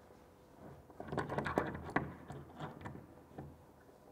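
An adjustable spanner clicking and rattling against a steel support bolt as gloved hands fit it and turn the bolt to tighten it into its wall plug. A quick run of small clicks begins about a second in and thins out toward the end.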